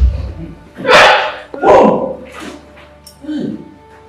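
A dog barking four times over soft background music, the first two barks the loudest.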